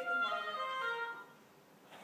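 Wind instruments playing held notes, a high tone first, then a few lower notes stepping downward, fading out a little over a second in.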